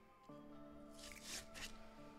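Soft background music with long held notes, and about a second in, a brief crinkly rustle of a foil Pokémon trading-card booster pack being torn open and the cards pulled out.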